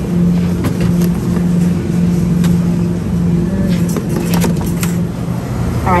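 Steady low hum of supermarket machinery, the refrigerated display cases and ventilation, with a low rumble under it and a few faint clicks.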